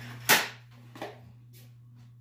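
A single loud, sharp clack about a third of a second in, then a lighter knock about a second in, over a steady low electrical hum.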